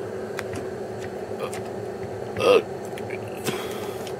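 Steady hum of running electronic test equipment, with a few faint clicks of front-panel buttons being pressed. A short vocal sound about two and a half seconds in.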